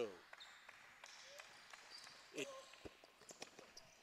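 Faint sounds of a basketball game in a gym: scattered, irregular thuds of a basketball bouncing on the court floor, with a single spoken word from the commentator about two and a half seconds in.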